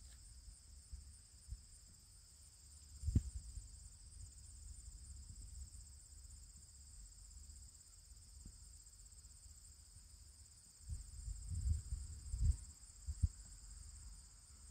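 Steady high-pitched chirring of crickets throughout, with a few dull low thumps and rumbles, one about three seconds in and a cluster near the end.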